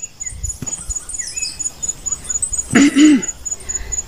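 A pause in a woman's unaccompanied singing, with a faint low rumble of outdoor air and a few faint chirps. Near the end comes one short voiced throat sound from the singer, rising and falling in pitch, the loudest thing in the pause.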